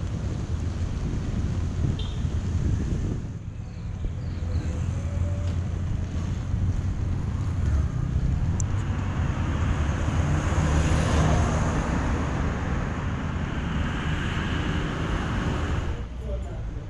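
Wind buffeting the camera microphone outdoors, a steady low rumble. A broader rushing noise swells around ten seconds in and eases off toward the end.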